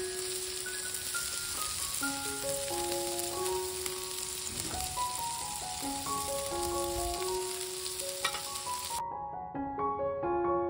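Burger patties topped with bacon sizzling on a hot griddle plate, under piano background music. The sizzle cuts off suddenly near the end, leaving only the music.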